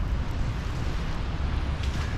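Wind buffeting an action camera's microphone in a snowstorm: a steady low rumble with an even hiss over it.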